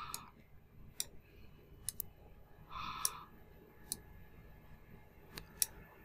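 Several faint, sharp clicks of a computer mouse, spaced irregularly, some close together in pairs, with a soft short breathy noise about three seconds in.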